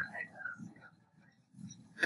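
Faint, quiet speech that trails off, with a short near-silent pause in the middle before the talking picks up again.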